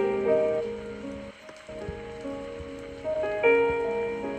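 Soft background music of held chords over a steady rain-like patter; both drop away briefly about a third of the way in, then the chords return.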